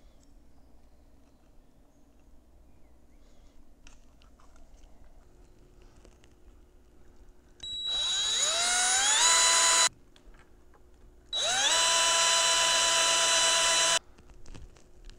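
Cordless drill boring pilot holes into the thin plywood frame of a 4x5 view camera's ground-glass holder. There are two runs. The first whines upward in pitch as the drill spins up over about two seconds and stops suddenly. The second starts about a second and a half later, rises fast and holds a steady whine. Before them come several seconds of faint, quiet handling.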